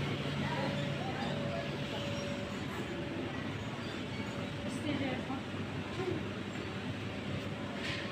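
Ambience of a large indoor play hall: a steady background hum with faint, indistinct voices of people talking.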